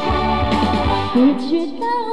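Live pop music with a woman singing into a handheld microphone over a backing track. About a second in, the beat and bass drop out, leaving the sung melody over light accompaniment.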